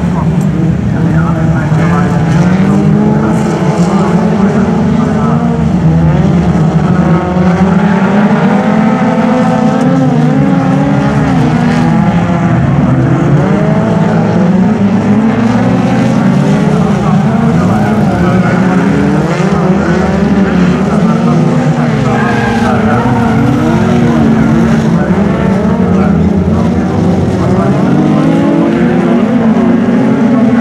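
Several folkrace cars racing on dirt, their engines revving up and down in overlapping pitches as they jostle round the track, loud throughout.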